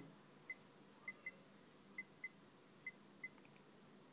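Faint iPhone on-screen keyboard clicks: seven short, high ticks at an uneven typing pace, one per key press as 'twitter' is typed.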